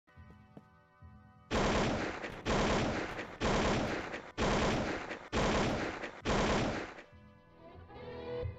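Automatic rifle fire sound effect in six loud bursts of rapid shots, about a second apart, starting about a second and a half in. Music comes in near the end.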